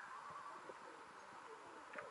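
Faint background with distant voices and a short run of quick high beeps a fraction of a second in, likely from the phone held on speakerphone.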